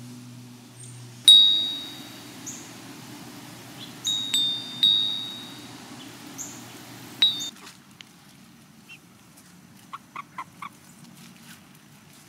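A metal bell wind chime stirring in the breeze: a few single clear strikes, the first about a second in and the loudest, then a cluster around four to five seconds and one more near seven seconds, each ringing out and fading. Near the end come four short, faint calls.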